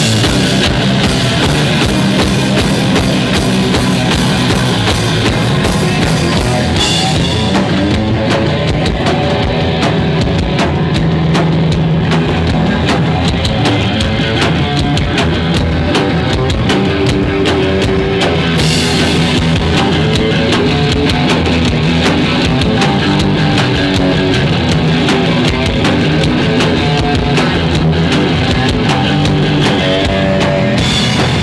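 Live rock band playing loud electric guitars over a drum kit. The bright top end thins out for about ten seconds in the middle, then returns.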